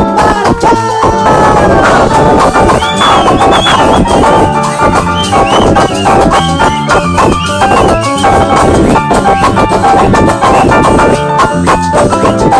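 Live band playing at close range: drums and bass with a saxophone melody on top. The recording is loud and poor, with a harsh sound.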